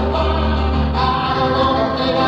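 Audience tape of a live rock-pop concert: piano with a male lead voice singing. The pitch wavers slightly from tape stretching.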